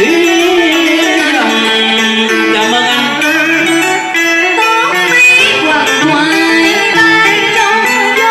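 Live Vietnamese cải lương (tân cổ) music: a man and then a woman singing in turn into microphones over plucked-string accompaniment.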